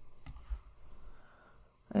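A computer mouse button clicks once, sharply, about a quarter of a second in, followed by a faint low bump.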